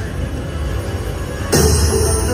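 Dancing Drums slot machine's game music over a steady low hum, with a sudden louder swell of sound effects about one and a half seconds in as the machine switches into its jackpot-pick bonus.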